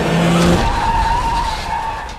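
Film sound effect of a pickup truck's tyres skidding on the road under hard braking, a dense, loud screech with a thin high squeal in the middle of it.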